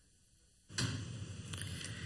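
Dead silence for a little over half a second at an edit, then faint, steady room ambience: an even background hiss and murmur with no clear words.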